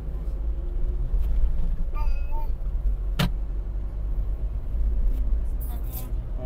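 Steady low rumble of a car's engine and tyres on the road, heard from inside the moving car, with one sharp click about three seconds in.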